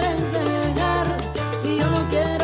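Salsa-style Latin band music in an instrumental passage with no singing. Held low notes change about every three-quarters of a second under melodic lines that bend in pitch.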